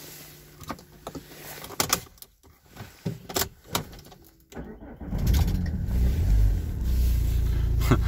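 A few clicks and knocks in the car's cabin, then about five seconds in the Opel Astra H's engine is cranked, catches and settles into a steady idle after stalling.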